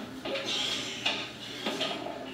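Metal clinks and clanks from a home multi-gym as the lat pulldown bar is hauled down. There is a sharp knock about a second in and another shortly before the end.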